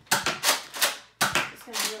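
Nerf Rampage pump-action blaster being worked, giving a quick run of sharp plastic clacks, about three a second.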